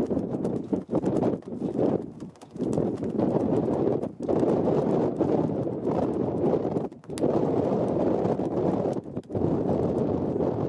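Gusty wind rumbling on the microphone, coming and going with brief lulls a few times.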